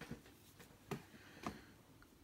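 A few faint, short clicks and taps from hands working a metal crochet hook through yarn: one at the start, one about a second in, and one about half a second later.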